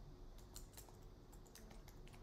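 Faint computer keyboard typing: a quick run of light keystrokes as a short word is typed, over a faint steady hum.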